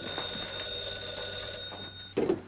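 A telephone bell ringing: one long steady ring.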